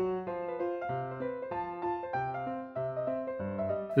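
Background music on a piano-like keyboard: a steady run of notes over a bass line.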